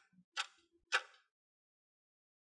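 Stopwatch ticking sound effect timing a quiz answer: two sharp ticks just over half a second apart, and the ticking stops about a second in.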